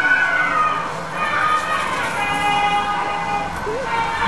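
Devotional temple music: a sustained, wavering high melody line held on long notes, with voices murmuring underneath.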